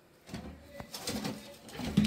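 Pigeon cooing softly, a few low calls.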